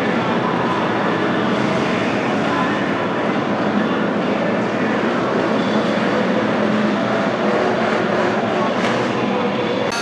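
NASCAR Cup Series stock cars' V8 engines running around the track as the field passes, a steady unbroken wash of engine noise.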